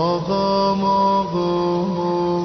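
A solo voice begins a slow devotional chant, swooping up into its first note and then holding long notes that step up and down in pitch.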